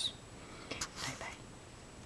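Faint whispered speech, unvoiced and breathy, about a second in, over low room noise.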